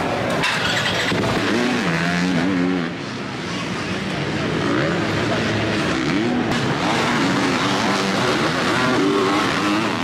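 Several supercross dirt bikes running on the track at once, their engine notes rising and falling as the riders rev up and back off over the jumps.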